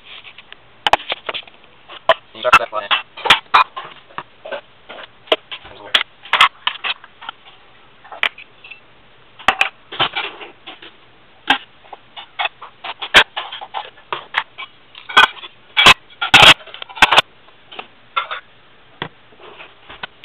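Dishes being unloaded from a dishwasher onto a granite countertop: ceramic plates, bowls, mugs and plastic containers clinking and clattering as they are set down. The knocks come irregularly throughout, with a louder run of clatter about three-quarters of the way through.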